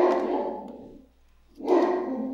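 A pet dog barking twice on guard, each bark drawn out for about a second, the second coming about a second and a half after the first.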